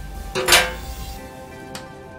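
Background music with steady tones; about half a second in, a brief, loud crinkle of plastic cling film being pressed and smoothed by hand.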